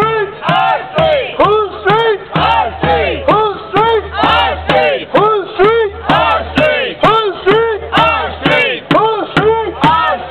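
Protest crowd chanting a short shouted slogan over and over in a steady rhythm, about two to three calls a second, with a hand drum struck with a curved stick beating along.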